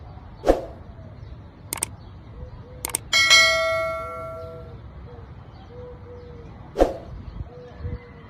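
Sound effects of a subscribe-button animation: a short swish, two clicks about a second apart, then a bell ding that rings out for about a second and a half, and another short swish near the end.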